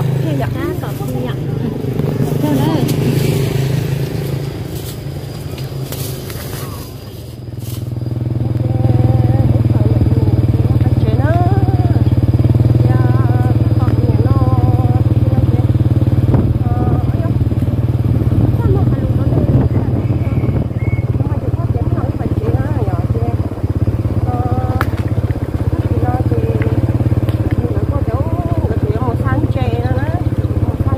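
Small motorcycle engine running steadily as it is ridden along a dirt road, louder and more even from about eight seconds in.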